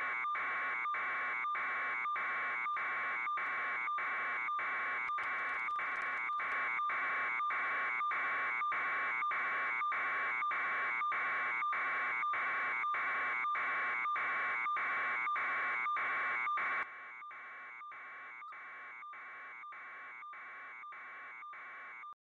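Electronic buzzing tone, alarm-like, pulsing on and off about twice a second. It drops to a quieter, duller level about three quarters of the way through and keeps pulsing.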